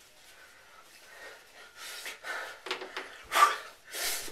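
A man breathing hard into a handheld microphone: after a moment of quiet come several short, breathy puffs and gasps, the loudest near the end.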